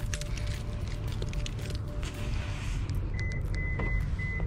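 Wind rumbling on the microphone outdoors, with a faint steady tone underneath. About three seconds in come a few short, high electronic beeps.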